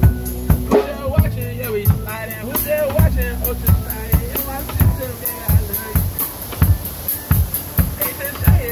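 Live band playing: a drum kit keeping a steady beat about two strokes a second, with synthesizer keyboard and a voice singing through a handheld microphone during the first few seconds.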